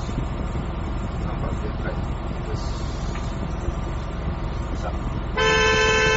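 Steady engine running inside the cabin of a dual-mode vehicle, a road-rail microbus. Near the end a single steady horn blast begins, sounded as the vehicle sets off on the rails in train mode.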